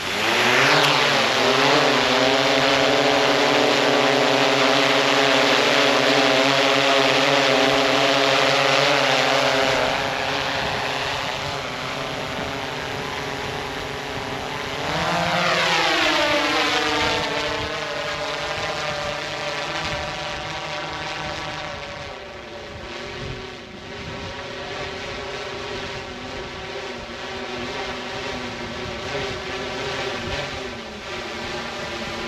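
DJI Matrice 30T quadcopter's motors and propellers spin up suddenly, then hold a loud, steady, many-toned whine while it hovers, a little quieter after about ten seconds. Around fifteen seconds in, the whine rises in pitch and gets louder as the drone gains altitude, then drops in pitch and fades as it climbs away.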